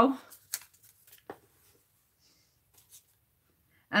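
Quiet handling of small craft materials on a tabletop: two faint light clicks in the first second and a half, then near quiet.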